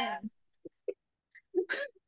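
A woman laughing: a few short, quiet bursts of giggling, with gaps between them, after a spoken word trails off at the start.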